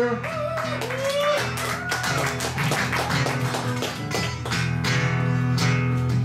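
Two guitars playing a guitar solo: many quick picked notes over acoustic guitar accompaniment.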